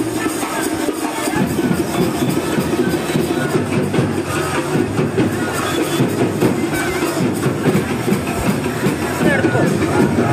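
Music playing over the steady clamour of a large crowd, many voices shouting and calling at once.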